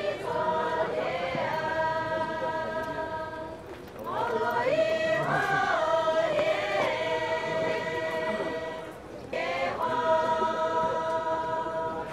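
Group of Pochury Naga women singing a folk song unaccompanied, in long held phrases that each open with a swoop in pitch. The singing breaks briefly for breath about four and nine seconds in.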